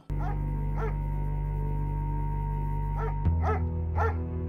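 Horror film soundtrack: a sustained low drone that shifts to a deeper, louder note about three seconds in. Over it, a dog gives a few short whimpers and yips.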